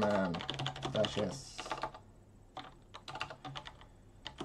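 Computer keyboard being typed on: quick, irregular key clicks as a terminal command is entered.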